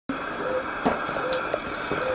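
A steady hiss of equipment and room noise, with a soft click about a second in and a few faint, short, low beeps.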